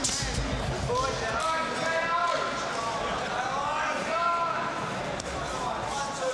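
Live boxing-arena sound: dull thumps from the fighters in the ring, with people shouting from ringside and the crowd in the hall between them.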